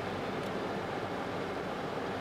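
Steady engine and road noise heard inside the cabin of a moving car.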